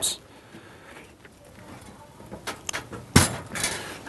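Push-on spade connectors being pulled off the terminals of an oven thermostat control: quiet handling at first, then a few small clicks and one sharp click about three seconds in.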